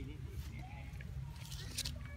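A person talking, with a word right at the start and faint voice later, over a steady low rumble. A short hiss comes near the end.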